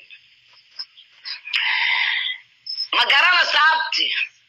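A person's voice talking in short phrases, thin and band-limited as through a phone line, with a brief hissy, noisy stretch about a second and a half in.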